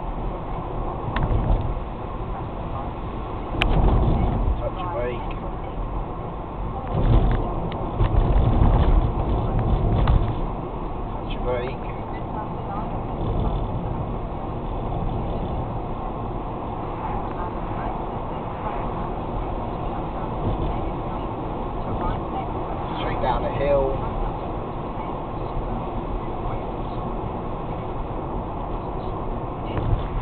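Steady road and engine noise inside a car's cabin as it coasts downhill off the throttle, with louder low rumbles about four seconds in and again from about seven to ten seconds in.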